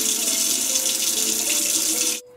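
Water running steadily from a kitchen tap into a sink, a level hiss, while the face is wetted with the hands.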